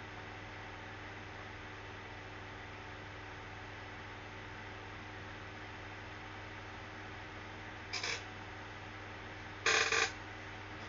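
Steady room tone: a low electrical hum under a soft hiss. Near the end it is broken by two short noisy sounds, the second louder and slightly longer.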